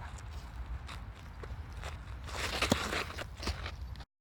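Footsteps and shuffling on dry, gritty dirt, with a louder stretch of scuffing and a couple of sharp clicks about two and a half seconds in, over a steady low rumble.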